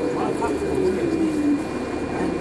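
Inside a 2014 NovaBus LFS articulated hybrid bus: the Allison EP 50 hybrid drivetrain's whine falls steadily in pitch over about a second and a half as the bus slows, over a constant low drivetrain hum.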